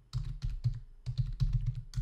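Typing on a computer keyboard: a quick, irregular run of keystrokes as a word is typed out.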